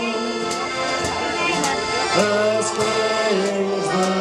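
Live sea shanty played on an accordion with a drum kit keeping the beat, cymbal strikes about twice a second, and a male choir singing along.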